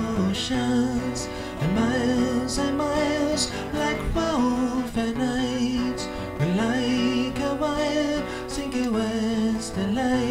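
Live solo performance: a man singing long held notes, several sliding up into pitch, over an amplified acoustic guitar.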